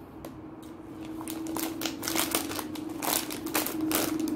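A person chewing small hard baked pretzels with sesame seeds close to the microphone: a rapid run of crisp crunches that grows denser and louder after about a second. A steady low hum runs underneath.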